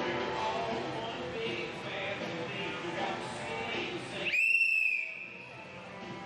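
Background music, cut about four seconds in by a single loud, high-pitched signal tone lasting under a second: the signal that ends a cutting run.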